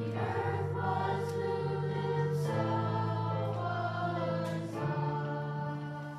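A youth choir of mostly girls' voices singing in harmony, holding sustained chords that shift a few times.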